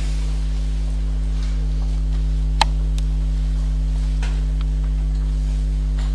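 Steady electrical mains hum with a low buzz and overtones, with a few faint clicks and one sharp click a little under halfway through.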